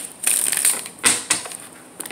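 Tarot cards being shuffled in the hands: two quick runs of crisp card clicks, the first just after the start and the second about a second in.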